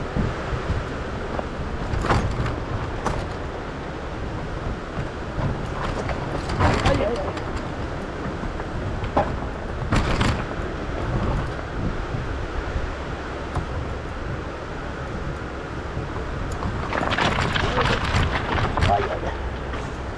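Honda 125 motorcycle's single-cylinder engine running as it rides a rough track, under an uneven rumble of wind on the microphone, with a few brief knocks.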